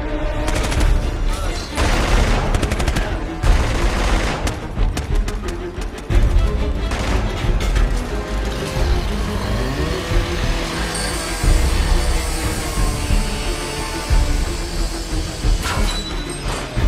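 Film soundtrack: music under rapid bursts of automatic gunfire and heavy booms, the gunfire thickest in the first six seconds.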